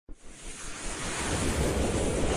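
A rushing whoosh sound effect from an animated logo intro: a wave-like noise that starts suddenly and swells steadily louder.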